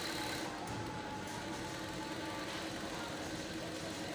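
Steady machine hum with a faint constant tone, unchanging throughout.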